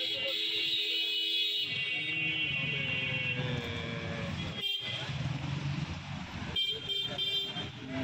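Outdoor traffic ambience: a low rumble with several long, held horn tones over the first few seconds and short toots near the end.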